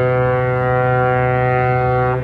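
One long, steady horn note held at a single unchanging pitch.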